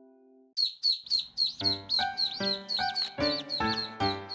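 Newly hatched chicken chick peeping in a rapid series of short, high chirps, about four a second. About a second and a half in, light music with a steady beat joins it.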